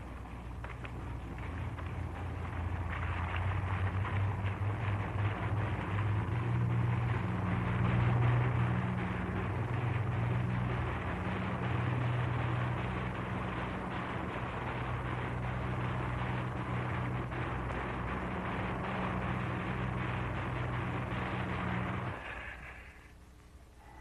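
Sportfishing boat's inboard engines running as the boat gets under way, a steady low engine note with the wash of water along the hull, growing louder over the first few seconds. The sound cuts off suddenly near the end.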